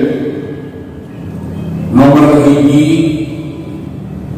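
A man's voice over a hall's microphone and loudspeakers, reciting in a drawn-out chanting style: a phrase trails off at the start, and after a short lull one long held phrase begins about halfway through and fades away.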